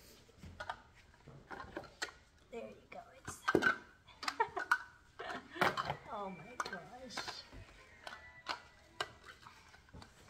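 Toy sensory blocks clicking and knocking against each other and the floor as they are stacked and pushed over, many separate short knocks, with a few short vocal sounds in the middle.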